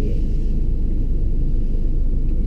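Steady low rumble of the car's engine and running gear, heard from on the car itself, with no breaks or distinct events.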